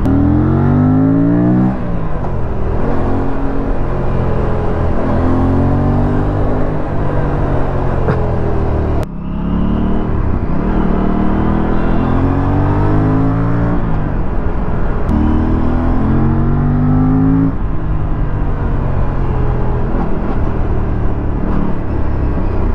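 Aprilia RS 457's parallel-twin engine running under way, its pitch climbing as it accelerates and falling back again several times, over a steady rush of wind and road noise.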